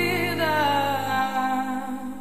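A song from a late-1980s radio hits compilation, with a held, wavering vocal note over sustained chords. The bass drops out about a second in and the music starts to fade.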